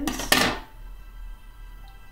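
A pair of scissors set down on a tabletop: one sharp clack about a third of a second in, over soft background music.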